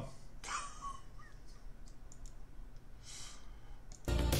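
A few faint, sharp clicks, a soft murmur and a short breath, with no music playing.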